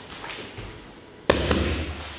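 Grapplers' bodies landing on a foam grappling mat as they roll into the guillotine: one sharp, heavy thud about a second and a quarter in, a lighter one just after, and a low thump fading out.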